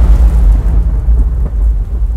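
Thunder sound effect: a loud, deep rolling rumble left over from a thunderclap, easing slightly about a second in.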